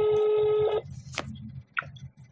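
Telephone ringback tone: one steady beep lasting about a second, over a low line hum, then a sharp click a little after the middle. It is the ringing signal of a call to the police duty desk, heard before the call is answered.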